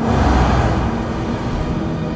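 A car passing close by: a sudden rush of tyre and engine noise that fades as the car drives off, over a low music bed.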